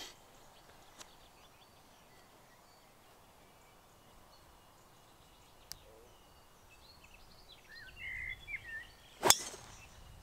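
Golf driver striking a teed ball: one sharp crack about nine seconds in, by far the loudest sound. Birds chirp faintly in the quiet background.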